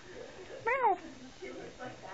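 Domestic tabby cat giving one short meow about a second in, rising then falling in pitch.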